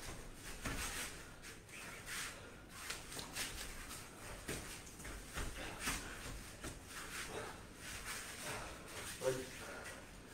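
Faint, irregular soft thuds, scuffs and rustles of two people sparring barefoot on foam floor mats, from footwork and arm contact.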